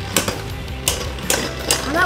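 Two Beyblade spinning tops, a metal-wheel Burn Phoenix and a plastic Burst Cho-Z Revive Phoenix, spinning in a plastic stadium and hitting each other with several sharp clacks at uneven intervals.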